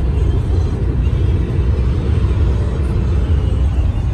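Steady low rumble of a car cruising at highway speed, heard from inside the cabin: road and engine noise.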